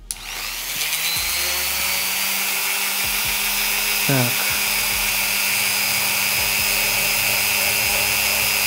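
Dremel rotary tool with a ball burr spinning up and then running at a steady high speed with a high-pitched whine, the burr grinding into an eggshell.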